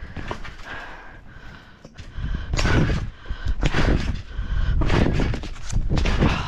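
Trampoline bounces with a trick scooter: quiet for the first couple of seconds, then heavy thumps on the mat with a rattle of the springs and net, about once a second.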